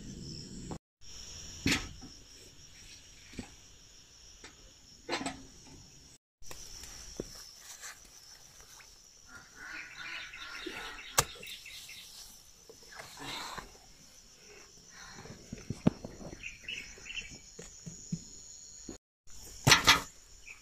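Insects chirring steadily in the background, with rustling leaves and a few sharp clicks as eggplants are snipped from the plants with scissors.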